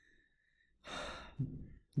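A man's audible breath, a sigh-like rush of air about a second in, followed by a short low voiced sound just before he speaks again.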